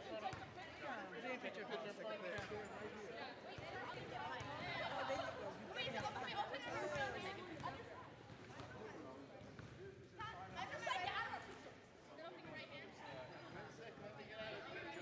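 Several people talking over one another: overlapping conversational chatter in a gym.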